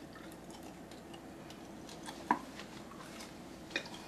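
A person chewing a sticky, chewy cuttlefish-and-peanut brittle snack with closed mouth: faint wet mouth clicks, a sharper click a little over two seconds in and another near the end.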